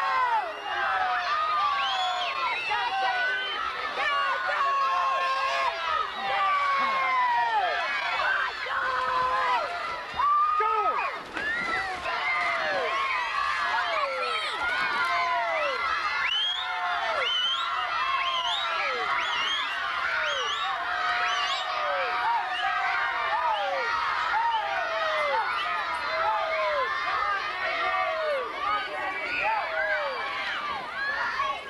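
Crowd babble: many high-pitched voices talking and calling out at once, overlapping continuously with no single voice standing out.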